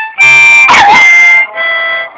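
Harmonica playing a loud held chord, then a softer one, while a pug howls along; the howl glides down in pitch about halfway through.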